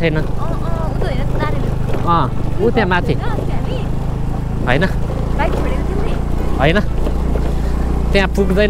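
Motor scooter engine running at a steady low speed on a gravel road, under a low rumble of road and wind that swells about halfway through.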